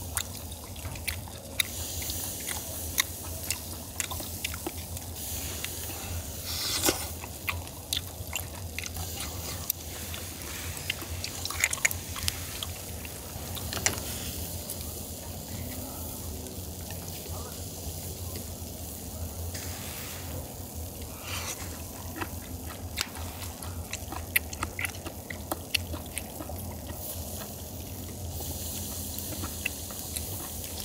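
Close-up eating sounds: chewing grilled clams, with frequent light clicks of chopsticks and a spoon against clam shells and the wire grill, over a steady hiss and a low hum.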